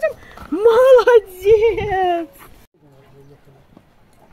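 A woman's loud, high-pitched, drawn-out exclamation that rises, holds and then falls, lasting about two seconds. After that only faint background remains.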